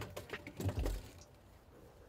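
A handful of light clicks and knocks within the first second as a small Odyssey AGM battery is set down and pressed into its metal tray bracket.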